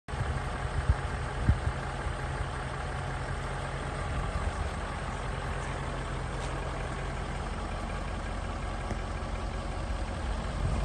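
Range Rover 4.4 TDV8 diesel V8 idling steadily, with a couple of brief bumps around a second in.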